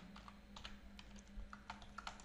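Faint computer keyboard typing: a few irregular soft key clicks over a low steady hum.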